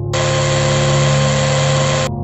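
Mechanical claw arm retracting: a steady machine whirr with a hiss, starting just after the beginning and cutting off suddenly at the end, over a low drone.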